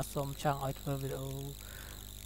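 A man's voice speaking, stopping about one and a half seconds in, over a faint steady low hum.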